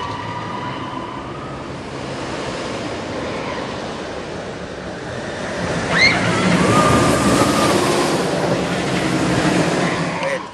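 A roller coaster train running along its track: a steady rush that swells louder about six seconds in, where a brief high rising sound also rises above it. The ride is a hybrid coaster, steel track on a wooden structure.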